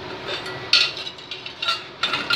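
A few short clinks and knocks of kitchen utensils against cookware, the sharpest a little before halfway through, over a steady low hiss.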